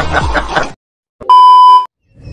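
Laughter that cuts off abruptly, then after a short pause a single loud electronic bleep tone, steady in pitch and lasting about half a second.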